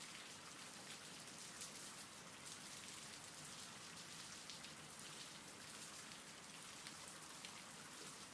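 Faint, steady rain falling, an even patter of many small drops with no thunder.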